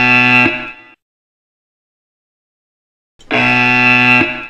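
Yo-Yo intermittent recovery test pacing signal: a loud electronic tone of about a second and a half, heard twice, about 3.7 s apart, at the 19 km/h shuttle pace. The first tone ends about a second in and marks the 20 m turn; the second starts near the end and marks the return to the start line.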